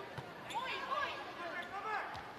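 Indoor volleyball rally: a sharp ball contact shortly after the start, with faint voices from the court and stands.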